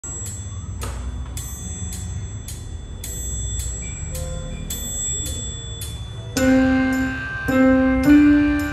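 Metronome clicks, about two a second, with a faint accompaniment underneath. About six seconds in, a digital piano comes in over the clicks, playing a melody one note at a time.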